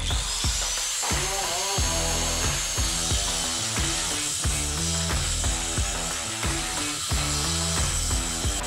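Electric angle grinder spinning up with a rising high whine, then running steadily, and grinding steel near the end. Background music with a steady beat plays under it.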